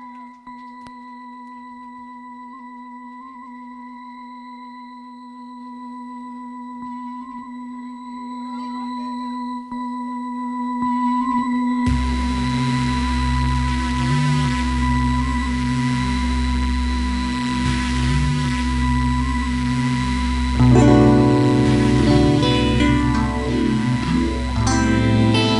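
Electric guitar through an amplifier, holding one steady sustained note that swells slowly for the first half. About halfway, a beat with a deep, evenly repeating low pulse comes in, and the music grows louder near the end as more notes join.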